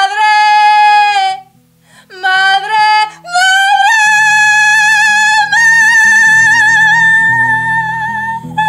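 A woman singing wordless, very high held notes: a short note, a brief second phrase, then an upward glide into a long sustained high note with vibrato. Low plucked string notes sound underneath.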